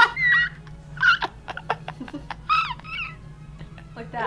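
A person laughing helplessly in a few short, high-pitched bursts with breathless gaps between them, over a faint steady hum.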